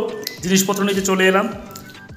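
A man's voice, two short stretches of speech or drawn-out vocal sounds, with small wet mouth clicks between them. It tails off quieter near the end.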